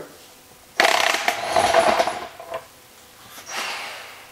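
Snap-on impact wrench hammering for about a second and a half, spinning off the input shaft nut of a Porsche 915 transaxle. A shorter, quieter burst follows near the end.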